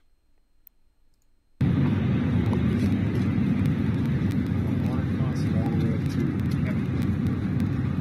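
A single soft click in near silence, then the sound of a phone video shot aboard an airliner cuts in abruptly about a second and a half in: steady, loud cabin rumble with faint voices.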